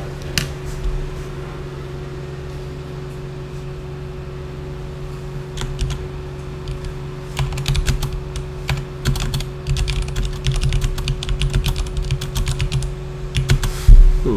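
Computer keyboard typing: a few separate key clicks, then an irregular run of quick keystrokes through the second half as a sentence is typed. A steady low hum runs underneath.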